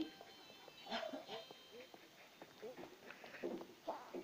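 Faint, muffled voices in short broken bursts, mixed with several sharp clicks and knocks of handling.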